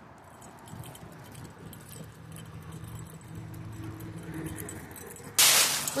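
A dog's metal chain leash clinking as the dog roots in a pile of dry leaves, with a sudden loud rustle of leaves near the end. A faint hum of traffic runs underneath.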